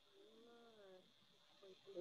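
Near silence broken by a faint, brief murmur of a person's voice, a soft hum lasting under a second.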